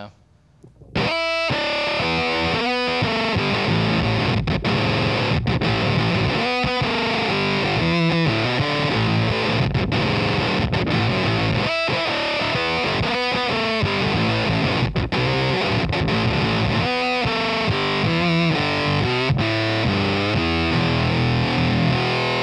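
Gretsch Electromatic Corvette electric guitar with Mega'Tron pickups played with distortion through an amplifier, starting about a second in: a run of distorted chords and riffs with short breaks between phrases.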